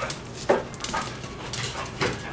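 Young pit bull making a few short vocal sounds while playing with her rope toy, the loudest about half a second in.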